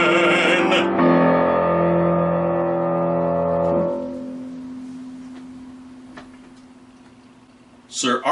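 A male voice holds the last sung note with vibrato, and about a second in the piano's final chord is struck. The chord rings on and slowly dies away over the last four seconds.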